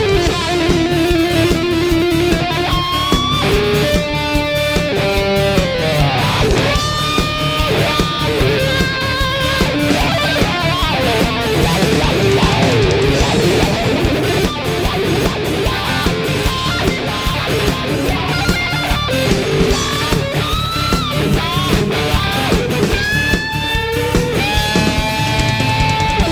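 A live band plays an instrumental passage led by a single-cutaway electric guitar, whose melody slides and bends between notes several times over steady drums, bass and keyboards.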